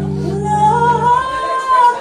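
A woman singing one long held note that rises about halfway through, over a sustained low electric bass note that stops about a second in.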